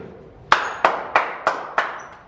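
A group clapping in unison: five sharp, evenly spaced claps at about three a second, each with a short echo in a hard-walled corridor.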